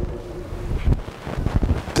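Wind noise on the microphone: an uneven low rumble with a faint hiss.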